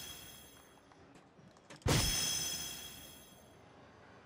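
A soft-tip dart strikes an electronic DARTSLIVE dartboard about two seconds in, and the machine answers with its electronic hit sound, a bright ringing chime that fades over about a second and a half. The hit registers as a single 19. The fading tail of the previous dart's chime is heard at the start.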